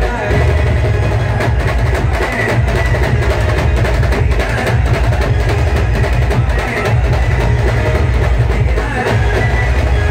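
Loud band-party music played through the band's sound system, with a strong bass and a steady drum beat.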